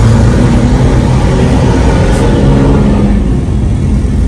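Loud, steady engine hum and road noise of vehicles crawling in heavy traffic.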